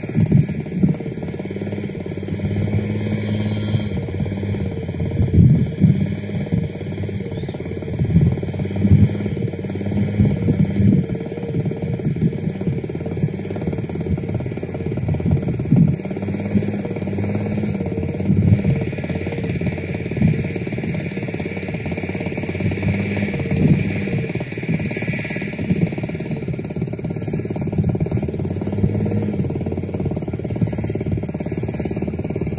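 A small engine running steadily throughout, with wind buffeting the microphone in irregular low thumps.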